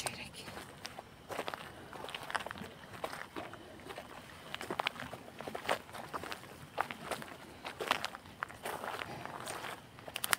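Footsteps on a gravel dirt track, an uneven run of about two steps a second.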